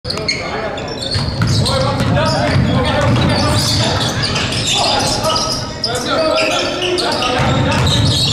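A basketball being dribbled and passed on a hardwood gym floor, with indistinct voices of players and onlookers in the gym.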